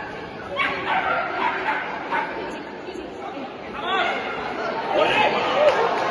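A dog barking a couple of times in the second half, over a crowd's chatter.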